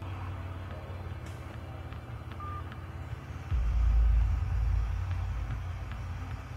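Low, steady vehicle rumble heard from inside a parked car, swelling suddenly into a louder low rumble about three and a half seconds in.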